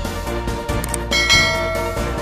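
Background music with a bell chime sound effect that rings out a little after a second in and fades, the notification-bell ding of a subscribe animation.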